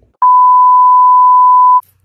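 A single loud, steady pure-tone bleep, held about a second and a half, starting and stopping abruptly.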